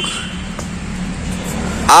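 Steady low background rumble with a faint low hum and no distinct events; a voice starts right at the end.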